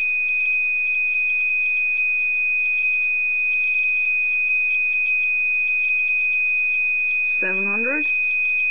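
Gamma Scout Geiger counter's clicker sounding a steady high-pitched tone with a fast crackle on top. The clicks run together at a very high count rate, near 900 microsieverts per hour from radium paint.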